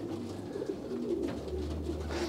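A flock of young racing pigeons cooing softly in a loft aviary.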